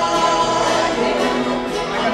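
Bluegrass band playing: a man and a woman singing a held note in two-part harmony over acoustic guitar and banjo.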